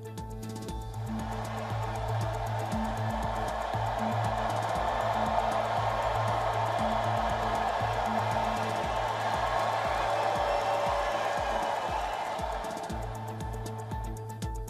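Background music with a steady beat, with a large arena crowd cheering and applauding over it. The cheering swells in about a second in and fades out near the end.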